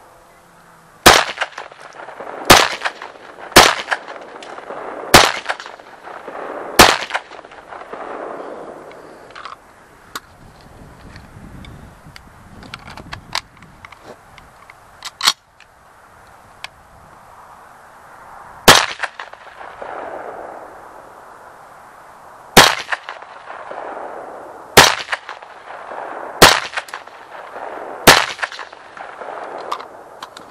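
Ruger Mini-14 semi-automatic rifle in 5.56/.223 firing ten shots. The first five come about a second and a half apart. After a pause of about ten seconds with quieter handling clicks during a magazine change, five more follow at intervals of two to four seconds.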